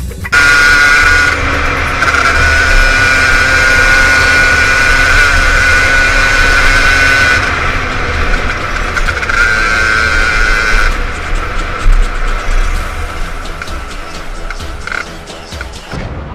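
Motorcycle engine running at a steady pitch while riding, with wind rumbling on a helmet-mounted microphone. The whine drops out for a moment a little past halfway, comes back briefly, then fades toward the end.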